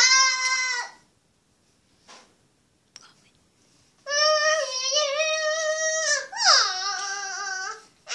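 A child's high-pitched wordless voice: a short vocal sound at the start, a pause, then a long held, wavering note from about halfway in that slides down in pitch near the end.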